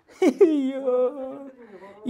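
A voice holding a long hummed note in a small vaulted room: it drops into the note about a quarter second in, holds it steady for about a second, then fades.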